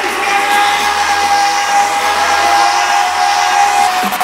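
Electronic dance music build-up: a loud rushing noise with one held synth note, which cuts off near the end, just before the beat drops.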